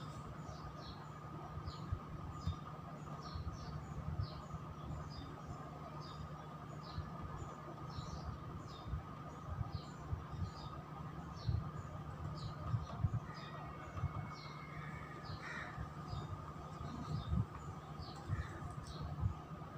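A small bird chirping over and over, short high chirps about twice a second, over a steady room hum.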